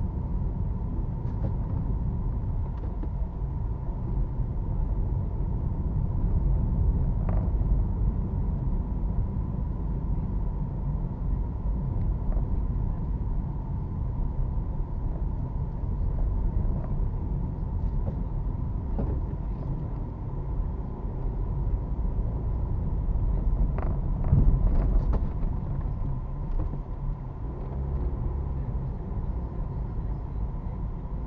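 A car driving slowly, heard from inside the cabin: a steady low engine and road rumble, with a few scattered light knocks and rattles.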